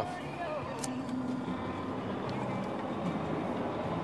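Diesel engine of a Volvo tri-axle dump truck idling, heard from inside the cab as a steady low hum.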